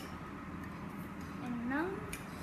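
Steady low room hum, with a child's voice briefly near the end.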